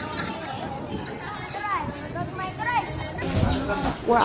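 Voices chattering in the background, no clear words, with a short rush of noise about three and a half seconds in.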